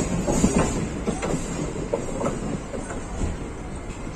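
Indian Railways passenger coaches running on a curve, heard from an open coach door: a steady rumble with irregular clattering of the wheels over the rail joints, loudest in the first second and a half.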